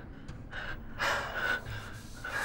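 A person breathing hard in several quick, heavy gasps.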